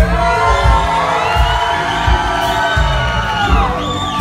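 Live band playing with a steady kick-drum beat about twice a second under one long held note that slides down near the end, with the crowd cheering.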